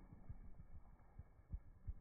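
Faint, irregular dull thumps, about six or seven in two seconds, from a phone being carried by someone walking through snow.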